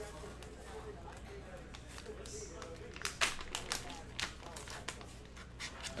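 A foil trading-card pack being torn open and handled, with a quick run of crinkles and sharp clicks about three seconds in.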